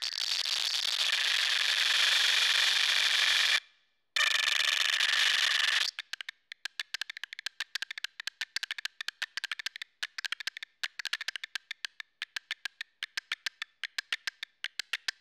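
Generative electronic music: a loud, dense wash of hiss-like noise with no bass cuts out briefly about four seconds in and stops about six seconds in. It gives way to a rapid, irregular stream of short, dry, high clicks, several a second.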